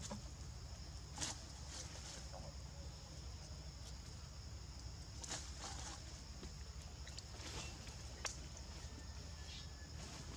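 Outdoor ambience with a steady high-pitched insect drone and a low rumble underneath, broken by a few short rustles or scuffs, the first about a second in and others around five and eight seconds in.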